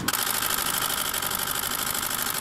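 Steady mechanical buzzing, like a small motor running, that cuts in suddenly and holds even with a fast pulse.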